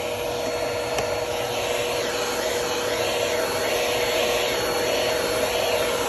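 Vacuum cleaner running steadily with a constant whine, its hose end drawn over a carpeted car floor mat.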